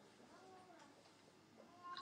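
Near silence, with a faint, brief wavering pitched sound about half a second in.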